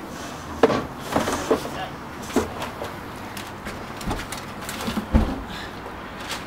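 Knocks, bumps and scuffing of a person climbing in through a window and dropping onto a carpeted floor, with a heavy thump about five seconds in.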